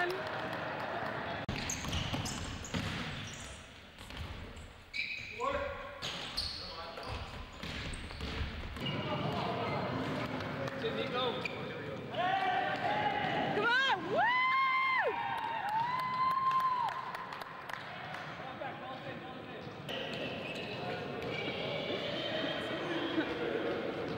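Basketball game in a gym: the ball bouncing on the court floor, sneakers squeaking and players' indistinct voices. A few high squeaks stand out about halfway through.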